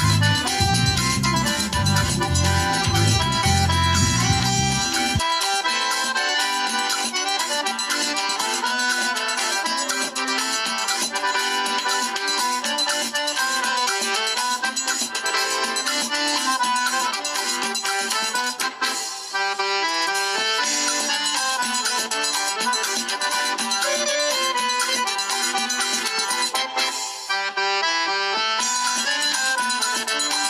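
Instrumental background music laid over the pictures. Its deep bass drops away about five seconds in, and the rest of the tune plays on at a steady level.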